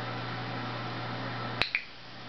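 Two sharp clicks in quick succession near the end, the second with a brief bright ring, over a steady background hum.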